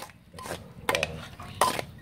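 Metal ladle scraping and knocking against a perforated aluminium colander, a few sharp clanks about half a second apart, as boiled fish-entrail mixture is pressed to strain out its liquid.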